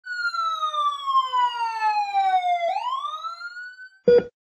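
Siren sound effect: one long wail sliding slowly down in pitch, then rising quickly back up over the last second or so, fading toward the end.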